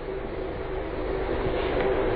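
Steady background noise of the lecture recording: an even hiss and rumble with a faint steady hum, unchanging through a pause in the speech.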